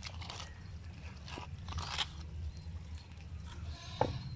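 Bare hand scooping and smearing wet mud plaster onto the bricks of a homemade rocket stove: a few short scraping strokes.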